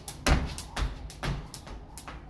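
A jump rope slapping a concrete floor and shoes landing in a steady rhythm, about two a second, the first thud about a third of a second in the loudest.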